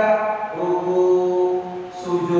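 A man's voice chanting, holding a long level note from about half a second in until near the end.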